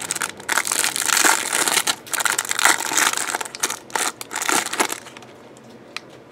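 Clear plastic shrink-wrap crinkling and crackling as it is torn and peeled off a pack of trading cards, in irregular bursts for about five seconds, then it stops.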